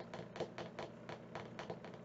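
Typing on a computer keyboard: faint, quick, irregular key clicks, several a second.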